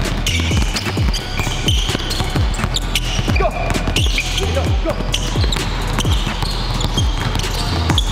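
Basketballs dribbling on a wooden gym floor during ball-handling drills, over background music with a steady, bass-heavy beat.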